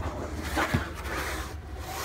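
A hard plastic cargo-bin lid being moved aside, rubbing and scraping, with a knock at the start and a lighter one under a second in.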